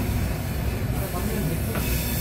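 A passenger train running on its rails, heard from inside the carriage as a steady low rumble, with faint voices.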